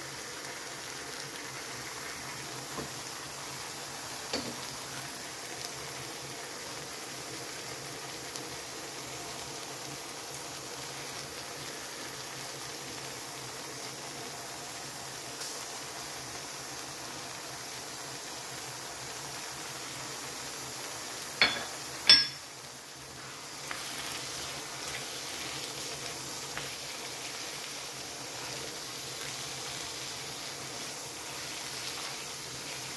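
Diced potatoes, tomato and onion sizzling steadily in a pan on a gas hob, with a few light clicks and two sharp knocks about two-thirds of the way through.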